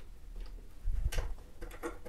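A few light clicks and knocks of a metal bar clamp being slid onto a plywood edge and tightened by its screw handle, a cluster about a second in and a few more near the end.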